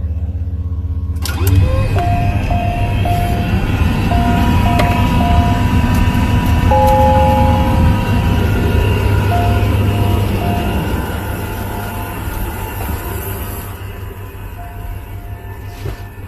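Gulfstream IV cockpit systems powering up on a ground power unit: a steady low hum that gets louder suddenly about a second and a half in. Over it come repeated short electronic beeps in several groups and, about seven seconds in, a two-tone chime from the cockpit alerting system.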